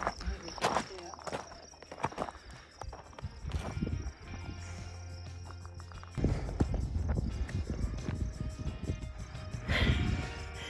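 Background music over footsteps on a gravel hiking trail, with wind buffeting the microphone and adding a low rumble from about six seconds in.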